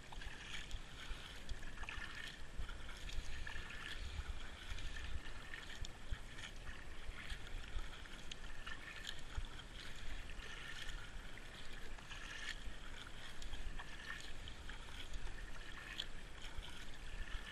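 Kayak paddle strokes: the blades dipping into calm water in a repeated rhythm, with splashing and dripping and a low rumble underneath.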